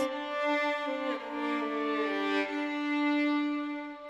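Background score of slow bowed strings: long held notes, with some of the upper notes stepping down to lower pitches about a second in.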